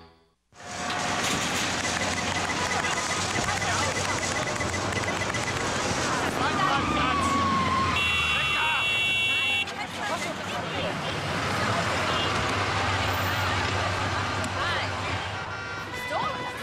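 Busy parking-lot commotion: many overlapping voices and cars moving, with a car horn honking for about a second and a half around the middle. It starts abruptly out of silence.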